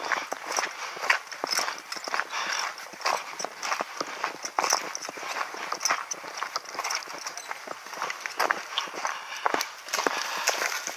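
Footsteps on a gravel path and through dry grass: a quick, uneven series of crunching steps, with stalks brushing against clothing and gear.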